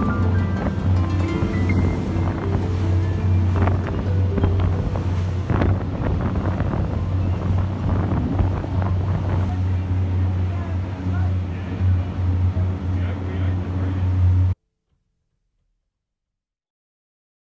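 Steady low drone of a ferry's engine with wind buffeting the microphone, cutting off suddenly near the end.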